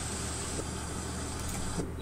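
Steady rushing of a waterfall pouring into a rock pool, heard as a played-back recording, with a low hum under it; the water noise cuts off shortly before the end.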